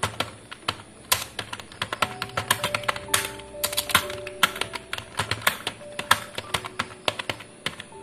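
Computer keyboard being typed on, an irregular run of key clicks, several a second, as a sentence is typed out.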